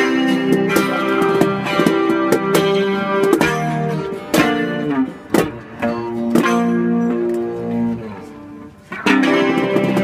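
Electric guitar and acoustic guitar played together in sustained, strummed chords. The playing thins to a quieter moment near the end, then comes back in with a strong strum.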